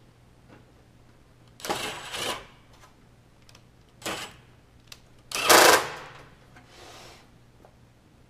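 Cordless drill/driver running in short bursts as it drives screws to fasten the light fixture closed: three runs, the third the loudest, then a fainter short one near the end.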